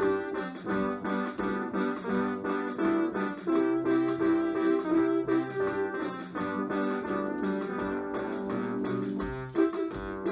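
Instrumental break of a song played on an electronic keyboard: a melody over chords, with no singing.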